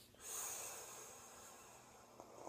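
A long drag pulled through a rebuildable dripping atomizer on a brass tube mod: a faint, airy hiss of air drawn in, loudest soon after it starts and fading away over about a second and a half.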